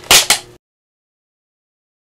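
Two quick, loud hissy bursts in the first half second, then the sound cuts off suddenly to dead silence.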